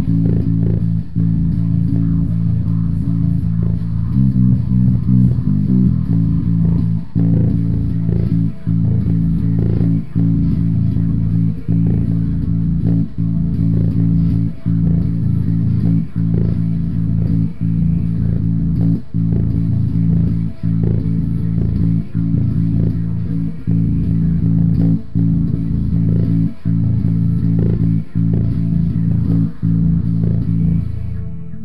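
Five-string electric bass guitar with its low string tuned down to A, playing a repeating riff of sustained low notes, with a short break about every second and a half.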